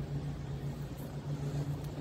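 An engine running steadily, a low drone with no words over it.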